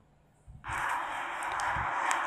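Near silence, then about half a second in a steady breathy hiss comes up on the recording microphone and holds.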